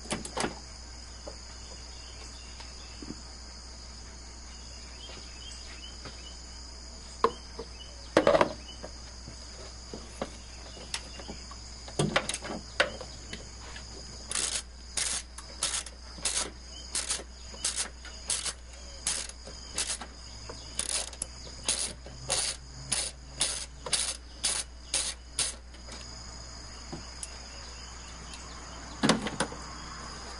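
A ratchet on long extensions backing out a 10 mm bolt: a few scattered knocks of the tool early on, then short bursts of ratchet clicking about twice a second, one burst per back-swing, through the second half. A steady high-pitched ringing runs underneath.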